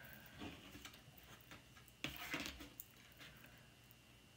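Faint handling of cards on a cloth-covered table, with one sharper click about two seconds in.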